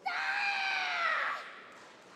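A female karateka's kiai: one loud, high shout of about a second and a half, with its pitch dropping away at the end.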